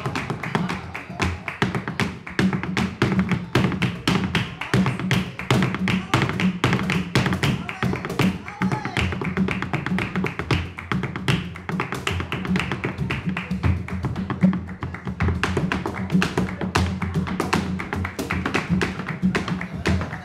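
Flamenco footwork (zapateado): a dancer's heeled shoes striking a wooden stage in rapid, rhythmic taps, with hand-clapping (palmas) and flamenco guitar playing an alegría.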